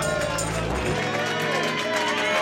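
A live rock band finishing a song: the bass and drums stop a little under a second in, and voices carry on over the fading band.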